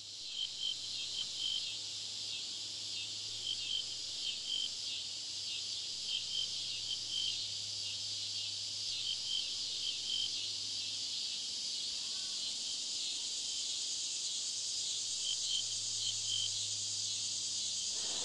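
Crickets chirping at night: a steady high shrill runs throughout, and short chirps come in clusters of two or three every couple of seconds.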